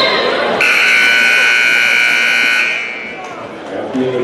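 Gymnasium scoreboard buzzer sounding one steady blast of about two seconds, right after a short, high referee's whistle, over crowd noise.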